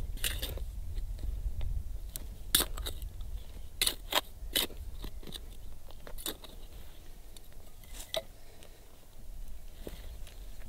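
Steel hand trowel digging into dry, stony soil: scattered crunches and scrapes as the blade cuts and lifts earth, with a cluster of sharper ones from about two and a half to five seconds in and another near eight seconds.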